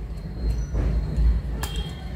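Plastic tripod legs of a selfie stick being unfolded by hand: low handling rumble and scuffing, with one sharp click late on.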